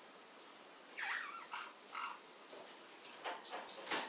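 A pet parrot making three soft, short calls between about one and two seconds in.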